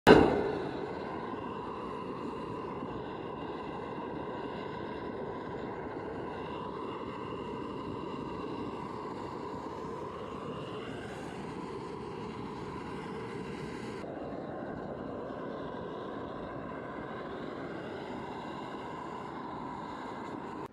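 Diesel-fired Baby Godzilla burner running into a small foundry: a steady rushing combustion and blower noise with a faint whine through it. A short loud sound comes right at the start, and the higher hiss drops away about two-thirds of the way through.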